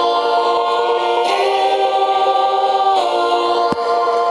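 Choir-like sung chords: several voices hold long notes together and shift to a new chord a few times.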